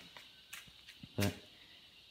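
Near silence: quiet room tone with a faint steady high whine and a couple of light clicks, broken by one short spoken word a little over a second in.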